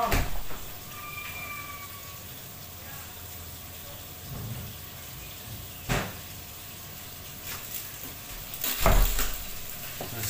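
Steady sizzle of a frying pan on a gas hob, with a sharp knock about six seconds in and a heavier thump near the end.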